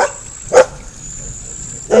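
A single short dog bark about half a second in.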